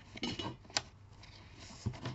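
A sheet of card being slid and lined up on a paper trimmer, a light rustle of paper with two sharp clicks, one just under a second in and one near the end.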